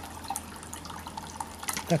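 Water trickling and dripping with small irregular ticks, over a steady low hum.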